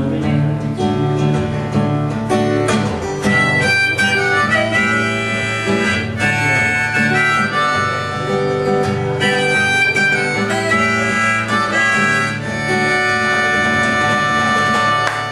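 Instrumental outro of a live folk song: a harmonica plays long held melody notes over steady acoustic guitar strumming.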